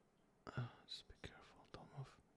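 A man whispering a short phrase close to the microphone: 'Just be careful. Don't move.'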